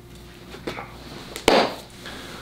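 A few light taps, then one sharp thump about three-quarters of the way through, as a large poster board is handled and laid down flat.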